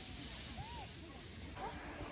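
Faint outdoor background of distant voices over a low rumble, with one far-off call rising and falling in pitch about a third of the way in. The background changes abruptly near the end.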